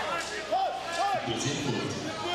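A basketball bouncing twice on a hardwood court, about half a second apart, each bounce with a short ringing pong, over the background noise of the hall.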